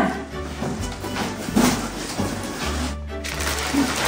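Background music with a steady low bass line, under rustling and handling noise from cardboard boxes and plastic bags of decorations being packed; the sound briefly drops out about three seconds in.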